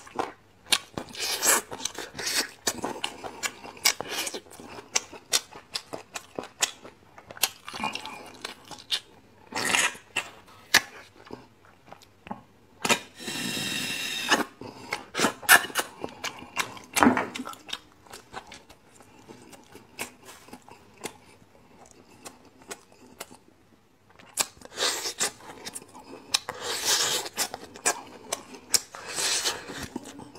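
Close-up sounds of a person eating braised beef bone marrow: wet chewing, lip smacks and sucking as marrow is drawn out of the bones, with one longer slurp about 13 seconds in.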